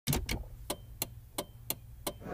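A clock-like ticking sound effect: sharp, evenly spaced clicks, about three a second, over a faint low hum.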